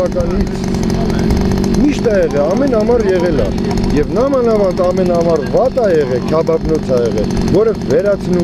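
People's raised voices in a heated argument, several overlapping, over a steady low mechanical hum.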